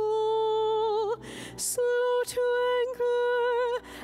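A woman cantor singing the responsorial psalm through the church microphone: long notes held on much the same pitch, as in a chanted psalm tone, with a short pause for breath a little over a second in.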